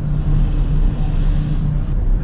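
Inside the cab of a Ford pickup truck while driving: steady engine drone and road rumble. A low, steady tone drops away a little before the end.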